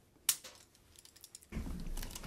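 Handling of small plastic lab items at a table: one sharp click, a few light ticks, then a low rustle from about a second and a half in as a pipette is picked up.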